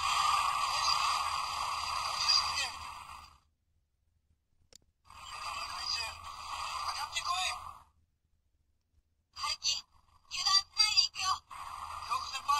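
Recorded voice lines played through the Sevenger figure's small built-in speaker, thin and with no bass, in three bursts with short silences between.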